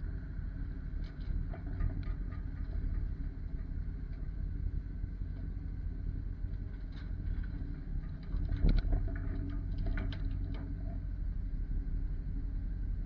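Steady low engine rumble from heavy equipment, with scattered metal clanks and one louder knock about eight and a half seconds in, as a wheel loader's forks lift a car off a flatbed trailer.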